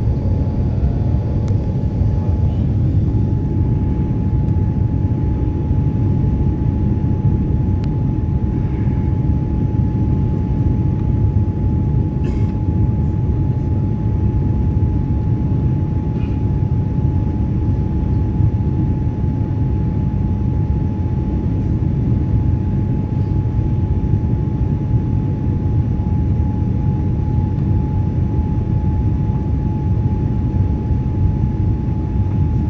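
Jet airliner cabin noise heard from a window seat in flight: a steady low rush of engines and airflow, with a thin constant whine above it.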